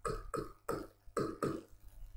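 Marker pen scraping across a whiteboard as a word is written by hand: a series of short, separate strokes, about six in two seconds.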